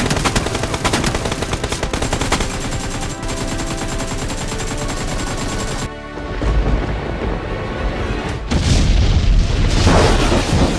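Gunfire sound effects: rapid automatic shots for about the first six seconds, then deep booms with a low rumble, over background music.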